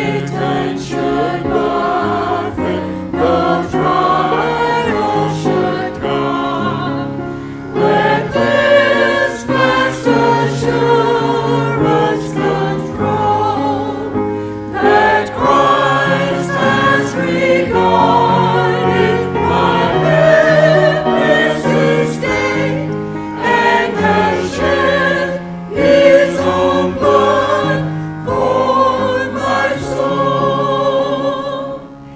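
A small mixed church choir of men and women singing a hymn together, led by a woman singing at the pulpit microphone.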